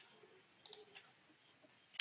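Near silence with a few faint clicks, the sharpest one at the very end.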